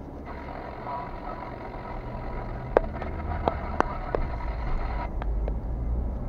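Car driving slowly, heard from inside the cabin: a steady low engine and road rumble, with a few sharp, irregular clicks about three to four seconds in.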